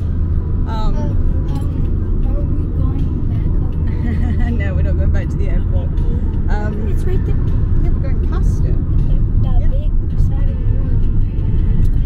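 Steady low road and engine rumble of a moving car, heard from inside the cabin, with a person's voice talking over it.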